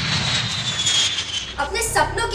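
Four-engine jet airliner flying low, its engines making a loud rushing noise with a high whine that slowly falls in pitch.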